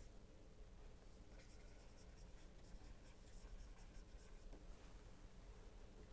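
Faint scratching and light tapping of a stylus writing on a pen tablet, in short strokes over a low room hum.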